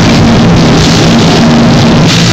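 A live rock band playing loudly, with electric guitars, bass and drums together. It is dense, steady and so loud on the phone's microphone that it is close to full scale and sounds crushed.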